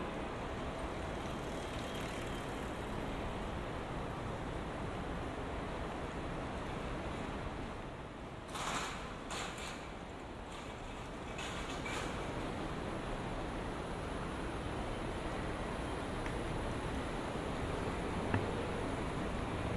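Steady city street ambience: a continuous hum of traffic, with a few short hissing bursts a little past the middle.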